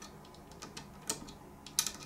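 Light, sharp clicks and taps from handling a plastic model airplane and its packaging: one click about a second in, then a quick cluster of clicks near the end.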